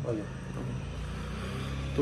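A vehicle engine's low, steady hum that grows louder about a second and a half in.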